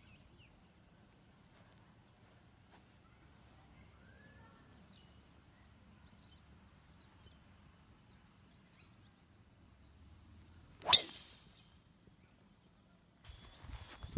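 A golf driver striking a teed ball: a single sharp, loud crack about eleven seconds in, after a long quiet stretch.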